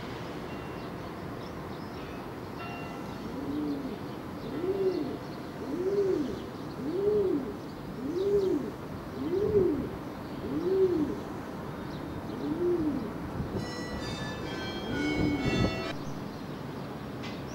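Feral pigeon cooing: a run of about nine low coos, each rising and falling in pitch, roughly one a second, starting a few seconds in. Near the end, a small bird chirps a few times.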